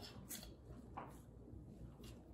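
Faint handling sounds as a metal rotisserie spit fork is slid along the spit rod and its prongs are pushed into raw pork: a couple of soft clicks and scrapes over quiet room noise.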